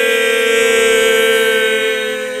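Synthesized logo sting: one loud, steady held note like a horn, beginning to fade near the end.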